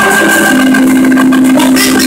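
Loud live praise-and-worship music filling the room, with a steady held note coming in about half a second in.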